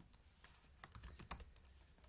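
Faint computer keyboard keystrokes: a scattered run of single key clicks, uneven in timing.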